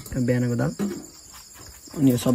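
Crickets chirping steadily in the background, with a man's voice briefly in the first second.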